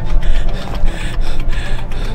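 Background film music: a steady low bass under a rhythmic, scratchy, mechanical-sounding texture that repeats about twice a second.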